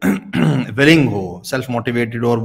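A man speaking Urdu in a continuous stretch of talk.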